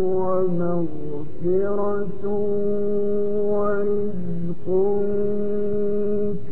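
A man reciting the Quran in the melodic mujawwad style, his voice holding long drawn-out notes with ornamented turns. It breaks off briefly about a second in and again near five seconds before the next held phrase.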